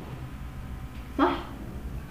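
Low steady room hum, broken about a second in by a single short spoken word.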